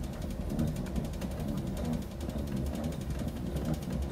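Hand crank winding the double-barrel spring motor of a tabletop salon gramophone: the winding ratchet chatters in a fast, even run of clicks, the ratchet's "стрекочет" (chirring).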